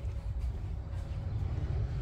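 Washing machine running: a steady low rumble, really loud in the room.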